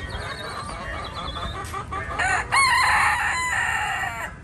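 Caged chickens clucking with short repeated calls, then a loud, drawn-out rooster crow about halfway through that lasts about a second.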